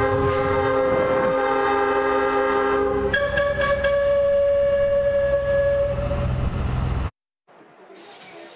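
The Boilermaker Special's locomotive-style horn blowing a long, loud chord over the rumble of its engine. The chord changes pitch about three seconds in and fades out around six seconds. The sound cuts off abruptly about seven seconds in.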